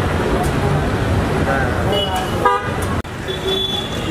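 Car horns honking in busy street traffic: short honks about two seconds in, and a longer held honk near the end, over a steady street din and crowd chatter.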